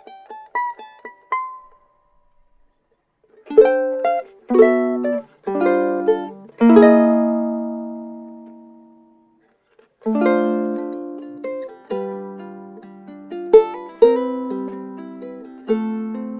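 Custom Martin rosewood-and-spruce concert ukulele played solo. A rising run of single plucked notes is followed by a pause of about two seconds. Then come a few strummed chords, the last one left to ring out and fade, and after a short silence a steady fingerpicked passage.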